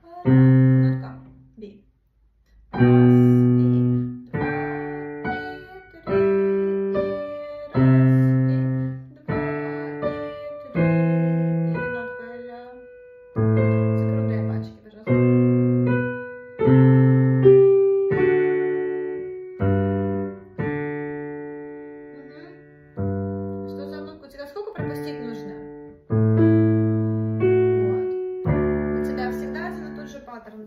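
A minuet played slowly, note by note, on a digital piano by two people, one taking the right-hand melody and the other the left-hand bass. A new note or chord comes about every second and each one is left to die away, with a short break early on.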